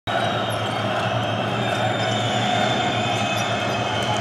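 Basketball arena during live play: a steady crowd din, with the ball and players' shoes on the hardwood court.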